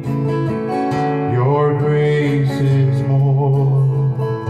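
Acoustic guitar strummed steadily, with a man singing a slow worship song over it.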